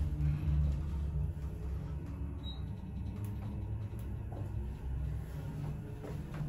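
A 1973 Dover hydraulic elevator car travelling down, heard from inside the cab: a steady low hum and rumble.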